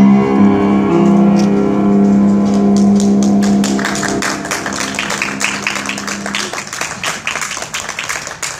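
An upright piano's last held chord rings and slowly dies away, fading out about six and a half seconds in. A small group of people starts clapping about three seconds in, and the clapping carries on after the chord has faded.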